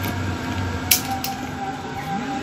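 A single sharp snip about a second in, as wire cutters cut through the wire tied around a cardboard box, over a steady background hum.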